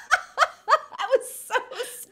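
Two women laughing together in short bursts, tapering off near the end.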